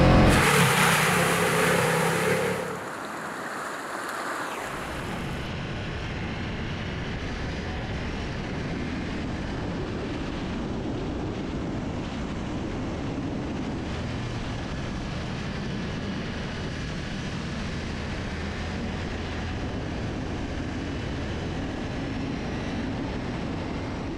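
Ducati Multistrada V4S motorcycle being ridden: a loud rush for the first two or three seconds as the rear tyre throws up dirt on a trail, then a steady engine drone mixed with wind noise for the rest.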